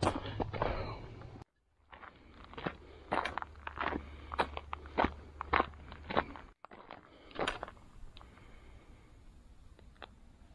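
Footsteps crunching on a dry dirt trail, about two steps a second, fading away near the end.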